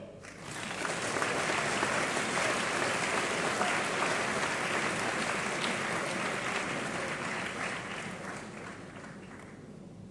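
Audience applauding, swelling within the first second, holding steady, then tapering off over the last few seconds.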